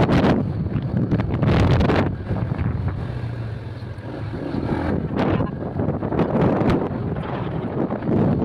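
Wind buffeting the microphone of a phone carried on a moving motorcycle, in irregular gusts over the steady running and road noise of the bike.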